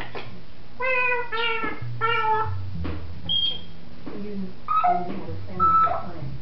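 African grey parrot vocalizing: three drawn-out calls, each falling slightly in pitch, starting about a second in, then a short high whistle and several shorter calls near the end.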